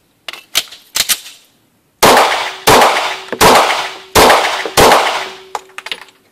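A SIG Sauer SP2022 9 mm pistol: the magazine is seated and the slide racked with a few quick metallic clicks, then five rapid shots about 0.7 seconds apart, echoing in an indoor range.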